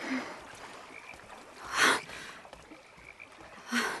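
Frogs croaking in night-time ambience, with two louder croaks about two seconds apart, one near the middle and one near the end.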